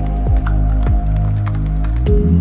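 Background music: deep sustained bass tones under held chords, with two quick downward pitch drops and light ticking percussion several times a second.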